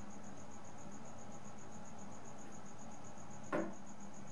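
A cricket chirping in a steady, fast, high-pitched pulse in the background. Near the end comes one short light clack, as the turntable's clear plastic dust cover is closed.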